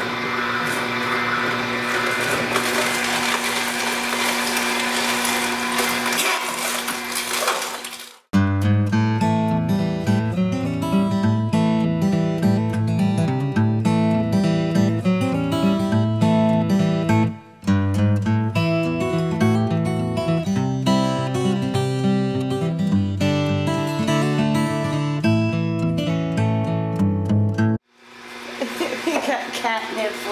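Omega NC900HD slow masticating juicer running with a steady motor hum for about the first eight seconds. It then cuts sharply to background music with plucked guitar-like notes for most of the rest, and the juicer hum comes back just before the end.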